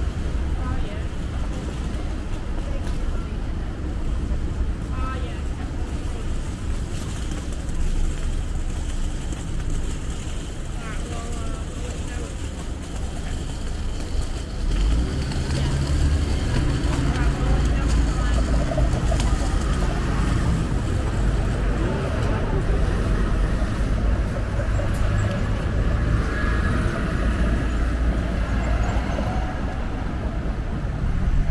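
City street traffic: cars and buses running along the road, with a low rumble that grows heavier about halfway through. Passersby talk faintly over it.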